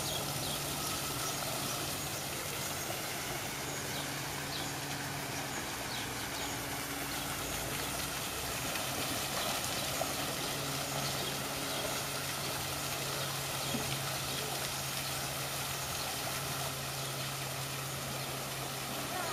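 Steady rush of water from an artificial rock waterfall pouring into a pool, with a low, steady machine-like hum underneath.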